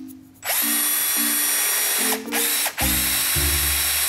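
Cordless drill with a number 30 bit boring nut-plate holes through a metal spar tube and its insert. It starts about half a second in and runs steadily, easing off twice for a moment past the middle.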